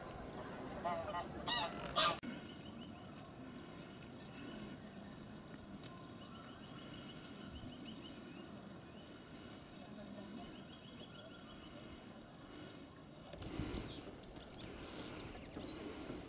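Geese honking on the lake, several calls in quick succession in the first two seconds, the loudest about two seconds in. Faint high bird chirps and trills follow.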